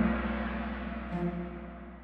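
Soundtrack music: the shimmering ring of a gong struck just before fades away steadily, over a deep hum, with a soft pitched note from another instrument about a second in.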